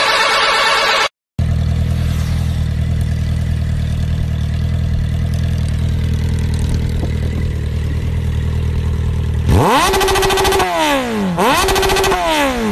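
A second of busy music-like sound cuts off. Then motorcycle engines idle steadily, and near the end an engine revs sharply up and back down twice.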